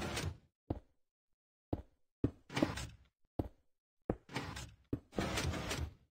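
A series of sudden bangs, about seven, several trailing into a short rumble, each separated by dead silence.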